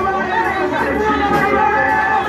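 Several voices amplified through microphones, overlapping, with music underneath.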